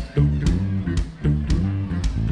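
Live band playing an instrumental stretch between sung lines: bass and guitar notes over drum kit hits about twice a second.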